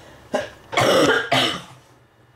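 A person coughing with a cold: a short cough, then two louder coughs close together about a second in.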